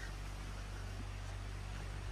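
Kubota L2501 tractor's diesel engine running steadily at a distance: a low, even hum with no change in pitch or level.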